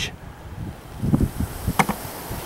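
A beehive's metal-clad top cover being pried up and lifted off: a few low knocks about halfway through, then a sharp click near the end.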